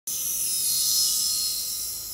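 Surgical high-speed drill handpiece running: a steady, high hiss with a faint whine.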